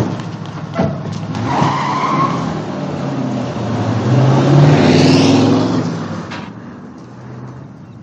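Car engines revving as cars pull away fast with tires squealing, after a sharp knock at the start. The sound rises to its loudest about five seconds in, then fades away.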